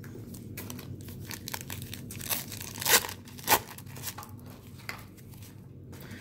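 Wax-pack wrapper of a 1990 Pro Set football card pack crinkling and tearing as it is ripped open by hand, with three louder rips in the middle.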